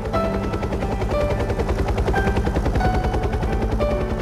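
Helicopter rotor chopping as a film sound effect, a rapid, even beat, over slow single piano notes from the trailer's music.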